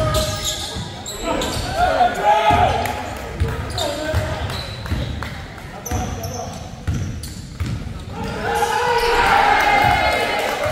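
Live sound of a basketball game in a large gym: the ball dribbled on the hardwood court, with players' voices calling out, echoing in the hall.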